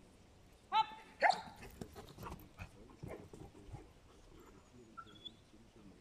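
A dog gives two short, high-pitched barks about half a second apart, roughly a second in; the second falls in pitch.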